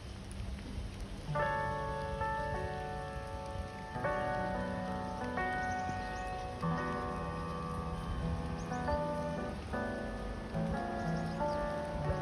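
Steady rain, then background music of slow sustained chords that comes in about a second and a half in and plays on over the rain.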